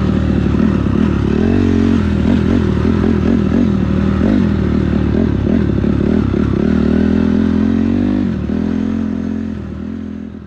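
Dirt bike engine being ridden hard on a motocross track, revving up and dropping back over and over through the corners and straights, with some clatter. The sound fades out near the end.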